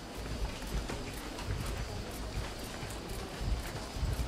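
Footsteps of people walking, heard as irregular light clicks and low thumps.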